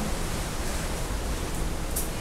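Steady rushing of wind and sea on an open ship deck, with a low rumble, and a light clink of tableware near the end.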